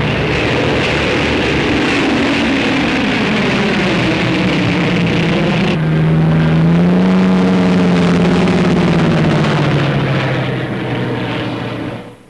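Twin piston engines of a Heinkel He 111 droning as it flies past low, the pitch sliding down as it goes by. About six seconds in, the sound cuts to a steadier twin-engine drone that rises slightly in pitch and then fades near the end.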